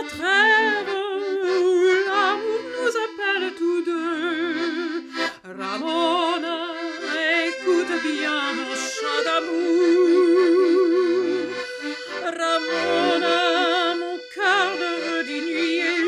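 A mezzo-soprano voice singing with a wide, strong vibrato, accompanied by a piano accordion playing sustained chords and bass notes.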